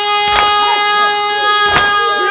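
A male noha reciter holds one long, steady sung note through a microphone, while mourners strike their chests in matam: two sharp slaps about a second and a half apart.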